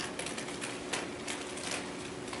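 Laptop keyboard clicking: a run of about eight irregular key taps, over a steady low hum in the room.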